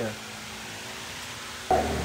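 Steady faint background hiss of room tone with no distinct events. Near the end the background jumps suddenly to a louder low hum as a voice starts.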